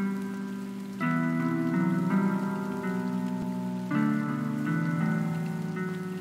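Rain falling, layered with slow, dark sustained keyboard chords as a hip-hop instrumental's intro, with no drums yet; a new chord comes in about a second in and another near four seconds.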